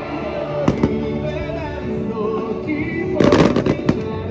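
Fireworks going off over music: sharp aerial shell bangs a little under a second in, then a dense burst of crackling reports near the end.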